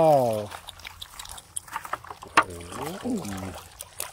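Live snakehead fish and water tipped from a plastic bucket into a woven bamboo basket: water dribbling through the weave, with scattered small knocks and one sharp knock a little past the middle.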